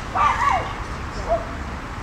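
A dog barking in short high-pitched yips: two close together at the start and a shorter one a little past halfway.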